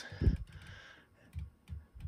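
Vortex Razor HD Gen II elevation turret turned by hand, giving a few faint detent clicks of 0.1 mrad each, with a dull handling thump about a quarter second in.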